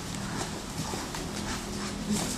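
Two grapplers scuffling on a padded training mat: faint, irregular knocks and rubbing of bodies and gloves, over a steady low hum.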